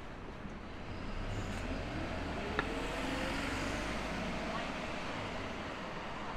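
City road traffic, with a vehicle's engine rising steadily in pitch as it pulls away and speeds up. A single sharp click about two and a half seconds in.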